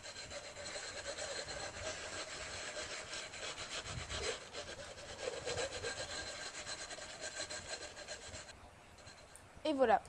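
Emery paper rubbed over the freshly cut edge of a dark glass bottle, a steady rubbing that stops about a second and a half before the end. It is sanding the edge left by the cut until it is no longer sharp.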